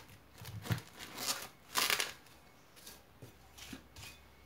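Roll of plastic cling film being handled: a few short, faint rustles and crinkles, the loudest about two seconds in.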